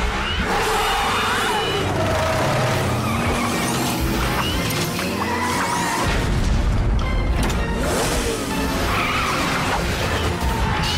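Action-cartoon soundtrack: dramatic background music mixed with racing-vehicle engine and tyre-skid sound effects.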